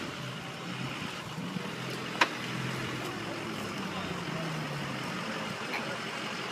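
Off-road pickup truck's engine running as it drives toward and over the edge of a washout, its pitch slowly rising and falling. A single sharp click about two seconds in.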